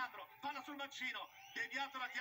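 Continuous male speech, quieter than the talk in the room: football commentary from the television broadcast of the match.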